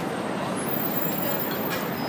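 Busy city street ambience: steady traffic noise from passing vehicles, with the chatter of a large crowd mixed in.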